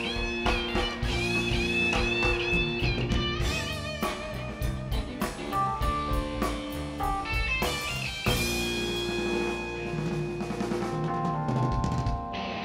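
Live band playing an instrumental passage: an electric guitar plays lead lines with wavering, bent notes over a drum kit.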